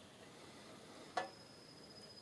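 Mostly quiet, with a single faint click a little over a second in and a faint, thin high tone starting about then.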